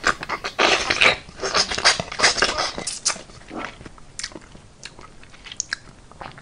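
Close-miked ASMR eating sounds: chewing and crunching, dense for the first few seconds, then thinning to scattered clicks and smacks.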